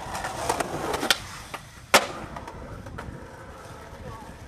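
Skateboard wheels rolling on concrete, a sharp pop about a second in, a quieter moment, then a loud crack of the board landing about two seconds in, and quieter rolling after it. This is an ollie or trick popped off the top of a stair set and landed at the bottom.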